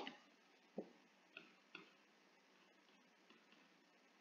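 Near silence with three faint, brief clicks in the first two seconds.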